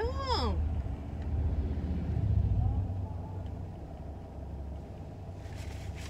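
A car passing by outside, heard from inside a parked vehicle: a low rumble that swells about two seconds in and then fades away.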